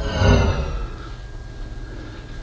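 A deep thump with a short falling whine as charging of an electric car is engaged, then a faint steady hum.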